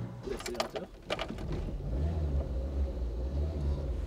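The 1984 Renault 18's 1397 cc Cléon-Fonte cast-iron four-cylinder engine running with a steady low hum. A few light knocks and clicks come before it, in the first second or so.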